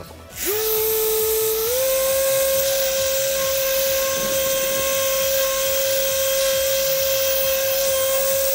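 Electric rotary polisher (ZOTA 5-inch) with a urethane buff, running against a polycarbonate headlight lens with compound: a steady motor whine that starts about half a second in and steps up in pitch once at about a second and a half.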